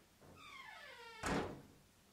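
A door hinge creaking, falling in pitch for about a second, then the door shutting with a single thunk.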